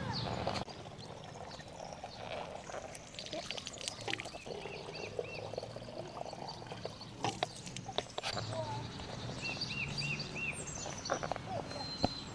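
Water running from an outdoor drinking-fountain spout into a plastic bottle, with a few sharp clicks of the bottle being handled. Short chirping calls repeat in quick runs in the background, twice.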